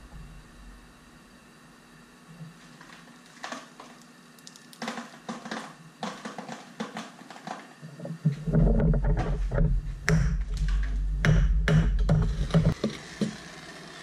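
Scattered small metallic taps and clicks as a steel ladle of lead and a rebar jetty anchor are handled over a gas burner. About eight seconds in, a loud low rumble sets in under more clicks, lasts about four seconds and stops abruptly.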